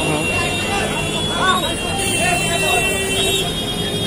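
Busy street ambience: people talking close by over the steady rumble of passing traffic.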